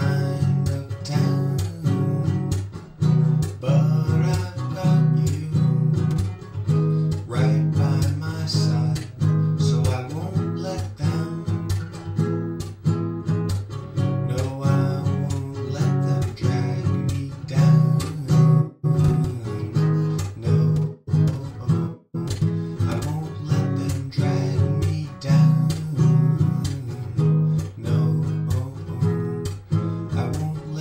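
Acoustic guitar strummed steadily through the song's G, Em, C and D chords, in a down, slap, down, down, slap pattern that sets a percussive slap on the strings between the strums.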